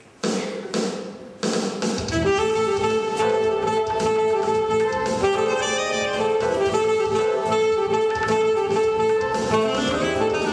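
Alto saxophone playing a jazz tune over a recorded backing track. A few short notes open it, and the full accompaniment with its bass comes in about two seconds in.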